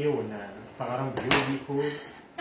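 A large kitchen knife knocks sharply once against a wooden cutting board a little over a second in, while raw chicken is being cut, with a woman's voice alongside.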